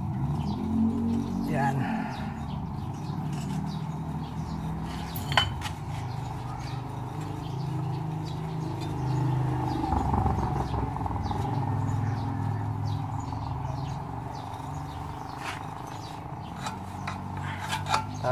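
Steel wool crinkling and scratching against metal as it is packed by hand into a motorcycle's muffler outlet, with a sharper click about five seconds in. A steady low rumble runs underneath.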